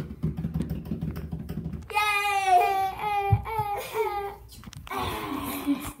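A rapid tapping drum roll for about the first two seconds, then a child's voice sings a high, wavering note for a couple of seconds, like a fanfare, and a short breathy hiss follows near the end.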